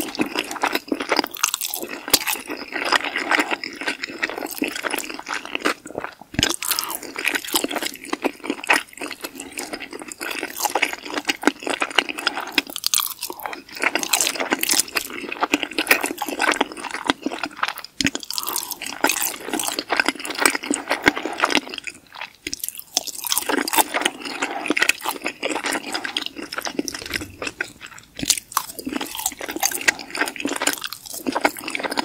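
Close-miked chewing of forkfuls of pesto pasta: steady wet mouth sounds with many small sharp clicks and smacks.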